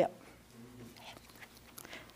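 Pause between a speaker's words: faint room noise with a brief, faint low tone about half a second in.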